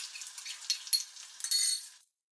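Minced garlic sizzling and crackling in melted butter in a stainless steel frying pan. Near the end a metal spoon stirring it clinks and scrapes against the pan with a bright ringing, the loudest sound, and then the sound cuts off.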